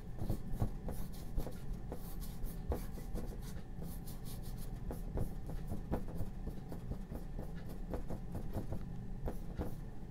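Flat paintbrush scrubbing oil paint onto a painting panel in many short, irregular scratchy strokes, over a steady low hum.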